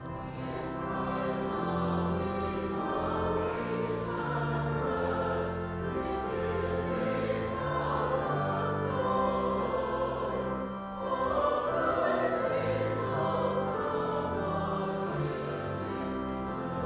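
Church choir singing, accompanied by an instrument holding sustained low notes that change step by step, with a short break in the phrase about eleven seconds in.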